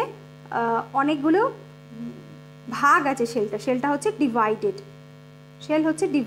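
A steady low electrical hum under a woman's voice talking in short phrases with pauses.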